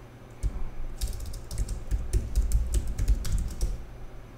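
Typing on a computer keyboard: a quick, irregular run of key clicks that starts about half a second in and stops shortly before the end, as a password is entered at a command-line login prompt.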